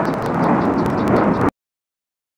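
Loud rumbling rush of noise, like wind buffeting the microphone, with faint ticks and no clear motor whine; the sound cuts out abruptly about one and a half seconds in.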